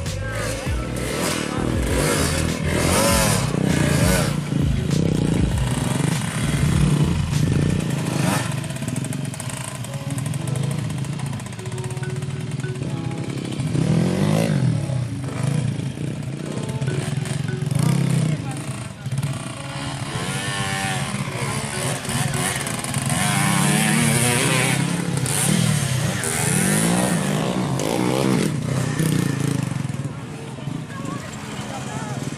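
Trail motorcycle engines running and being revved, their pitch rising and falling repeatedly, mixed with voices and music.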